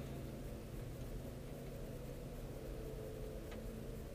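Steady low hum of a car's engine and tyres, heard inside the cabin while driving slowly over fresh asphalt, with one faint tick about three and a half seconds in.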